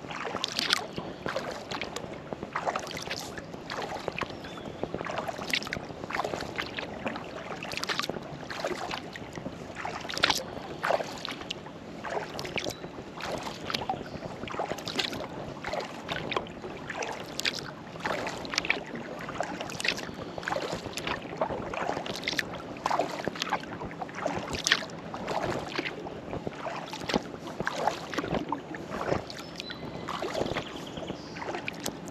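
Kayak paddling: the paddle blades dipping and water splashing and trickling off them in an irregular run of small splashes.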